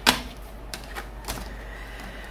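Tarot cards being handled and set down on a woven wicker tabletop: one sharp tap just after the start, then a few softer taps and card clicks spread through the rest.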